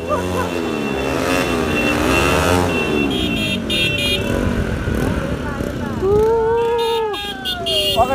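Motorcycles running in a group on the road while riders shout and whoop, with one long whoop near the end; short high horn beeps come in twice.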